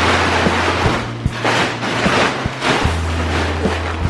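Large plastic tarp rustling and crinkling loudly as it is dragged and flapped across a floor, over background music with a steady bass line.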